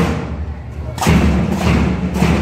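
School marching band's drums and cymbals playing in time, with a lighter first second and then a loud hit about a second in, followed by a sustained low tone.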